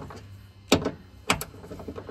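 Two sharp metallic clicks about half a second apart, from a socket and ratchet on a Tesla Model 3/Y frunk latch's 10 mm mounting bolts as they are backed off slightly.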